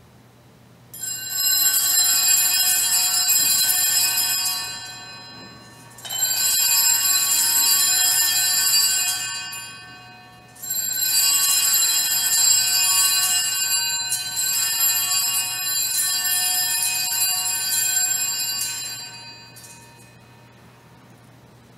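A cluster of altar bells (Sanctus bells) shaken by hand in three long rings, the last the longest, fading away between them. They mark the priest's blessing of the people with the Blessed Sacrament in the monstrance at Benediction.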